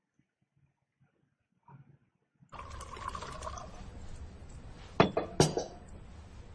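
Film soundtrack audio: near silence, then a steady low background hum of the scene's room tone comes in about halfway through. Near the end, two sharp clinks of glassware on a table, half a second apart, are the loudest sounds.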